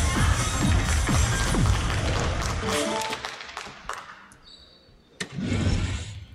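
Electronic sound effects from a soft-tip dartboard machine. There are repeated falling swooping tones for about two seconds, then a short run of stepped chime notes about three seconds in. A fresh burst of effect sound comes near the end, as the machine passes the turn to the next player.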